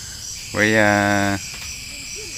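Insects chirring steadily, a thin high-pitched pulsing drone that runs on under the talk.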